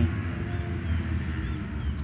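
Outdoor field ambience: a steady low rumble with a few short, faint bird chirps.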